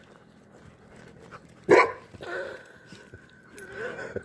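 A dog barks once, loudly and sharply, a little under two seconds in, then keeps up quieter, drawn-out vocal sounds.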